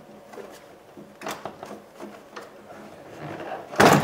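Plastic door trim panel of a 1998 Chevrolet Venture being pried away from the door by hand, its push-pin retainers letting go with a few faint clicks and creaks, then a loud pop and rattle near the end as more pins release.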